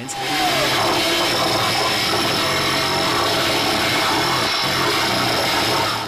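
Loud, harsh, steady grinding noise with a low hum beneath it, the kind of wall of noise used in noise and danger-music performances. It comes in right at the start and cuts off sharply near the end.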